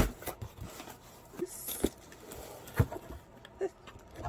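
A cardboard mailer box being opened by hand. A sharp knock comes right at the start, followed by a few lighter knocks and a brief rustle of cardboard and paper as the lid is folded back.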